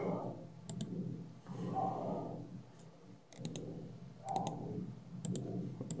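Short, sharp clicks coming singly or in quick pairs and threes every second or two, with faint low murmuring in between.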